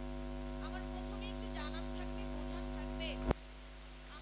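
Steady electrical mains hum through the stage public-address system, with faint voices in the background. A click comes a little over three seconds in, after which the hum is quieter.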